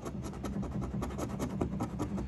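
A coin scratching the coating off a scratch-off lottery ticket in quick, repeated strokes.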